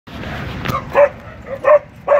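Dogs barking: two short, loud barks, one about a second in and one near the end, over a rougher din of barking before them.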